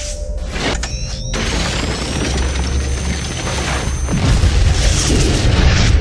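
Cinematic trailer-style sound design over music, built on a deep low rumble with booms. There is a sharp hit under a second in, then a high whine that rises and levels off, holding until about four seconds in. A louder low boom swell follows.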